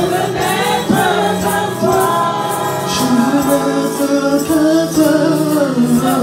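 Live gospel worship singing by women's voices, holding long notes, over keyboard accompaniment.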